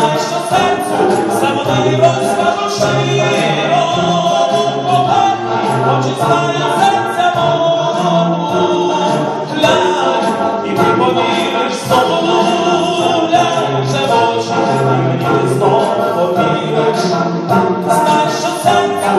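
Male vocal sextet singing in harmony a cappella, one lead voice over the group, with sustained low bass notes, heard from far back in a large concert hall.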